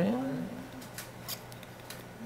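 A man says "okay" at the start, then a few faint, sharp clicks come about a second in and again near the end.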